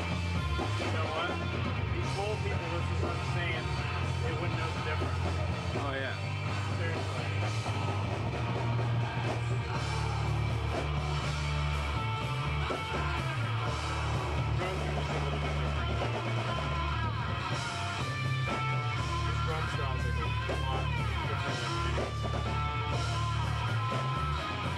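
Noise rock band playing live: electric guitar and a drum kit going full tilt, loud and dense throughout.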